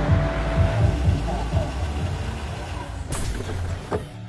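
Mercedes-Benz SLS AMG's V8 engine running with a low rumble as the car pulls up, with a short sharp noise about three seconds in.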